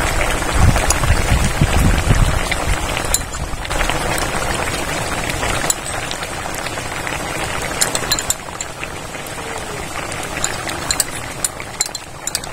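Fish curry boiling in an aluminium kadai, with a steady bubbling hiss that eases somewhat after about six seconds. Scattered sharp clicks come through it, most of them near the end.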